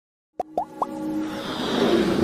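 Logo intro sting: three quick pops, each sliding upward in pitch, about half a second in, followed by a swelling electronic music build.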